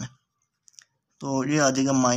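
A man speaking Hindi, with two faint, short clicks in the gap between his words.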